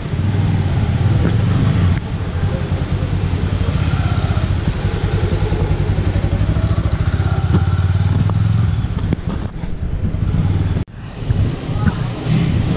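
A motorcycle engine running steadily at low speed as the bike is ridden, a rapid pulsing low rumble. It cuts off suddenly near the end.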